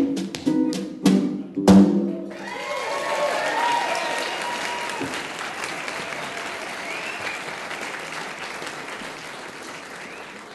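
A tap dance routine with drum and guitar ends on a few sharp accents of tap shoes, snare drum and guitar chords, the last and loudest hit about two seconds in. The audience then breaks into applause with whoops and cheers, slowly fading.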